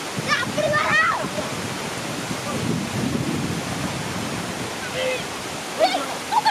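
Steady rush of water pouring over a concrete wall into a shallow pool, with heavier sloshing in the middle as people wade and handle a net.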